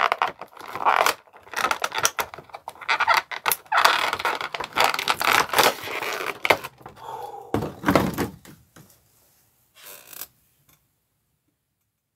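Plastic action-figure packaging being handled and pulled apart: rapid rustling, crinkling and clicks of the plastic tray as the figure is worked free, with a heavier thump near eight seconds. The handling dies away about nine seconds in.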